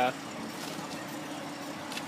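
A steady low hum over even background noise, with no distinct events.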